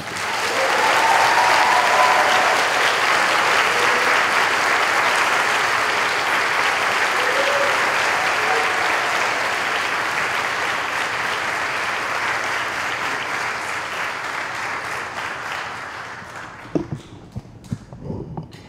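Audience applause that starts at once, holds steady and dies away about sixteen seconds in, with a few voices calling out in it.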